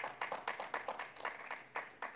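Scattered applause from a small audience: a few people clapping, with several uneven claps a second.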